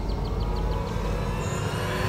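Tense dramatic background score: a sustained low drone with a quick run of high ticking notes that fades out about a second in, then a rising swell near the end.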